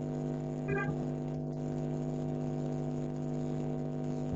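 Steady electrical hum made of several fixed pitches, carried over a video-call audio line, with a brief faint sound just under a second in.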